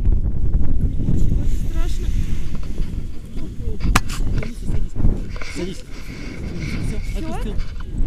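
Wind buffeting the camera microphone as a steady, uneven low rumble, with faint voices and one sharp click about four seconds in.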